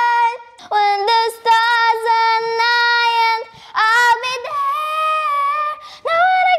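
A young girl singing solo, holding long notes of a second or two with short breaths between phrases, and sliding up to a higher note near the end.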